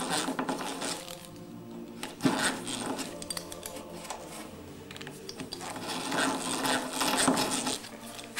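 Geared hand drill being cranked, its bit boring through solid oak with a whirring, gear-driven sound and a sharp click a couple of seconds in.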